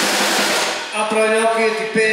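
Live band playing: drum kit with cymbals and guitars. A cymbal wash fades out just before a second in, after a brief drop in level, and held notes carry the rest.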